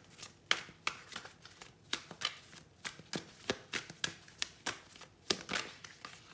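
A tarot deck being shuffled by hand: a steady run of sharp card slaps and clicks, about three a second.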